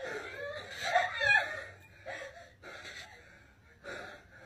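Quiet, high-pitched wordless vocal sounds from a person, loudest about a second in and then fading.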